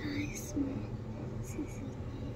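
A girl speaking softly, close to a whisper.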